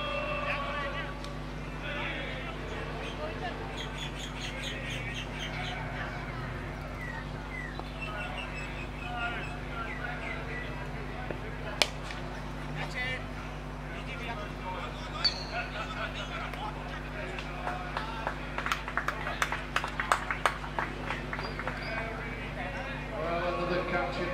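A cricket bat strikes the ball with a single sharp crack about halfway through. A few seconds later comes a quick run of claps from spectators, over steady background chatter.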